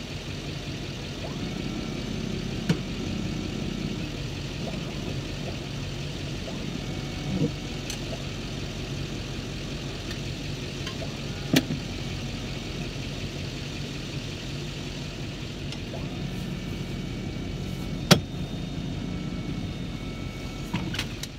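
An engine idling steadily while a truck-mounted Ezyloader hive loader lifts and swings pallets of beehives. Four short sharp clanks from the loader and pallets are spread through the sound.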